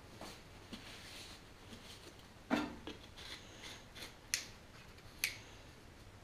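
Paper towel rubbing on a small metal can, with one loud knock about two and a half seconds in and two sharp clicks later.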